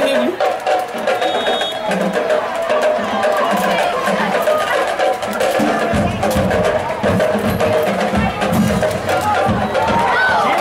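Drums and percussion playing a rhythmic beat over crowd voices, with heavier bass-drum hits coming in about six seconds in.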